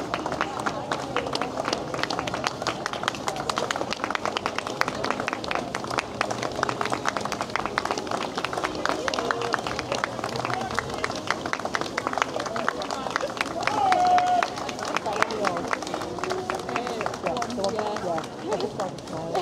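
Marching footsteps of a parade column passing, mixed with spectators clapping in dense quick claps and crowd voices.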